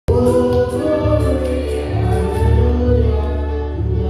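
Gospel music: a choir singing held, sustained lines over keyboard accompaniment with a heavy bass.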